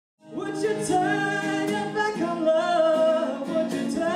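A woman singing a song live to a strummed acoustic guitar, starting suddenly after a brief silence.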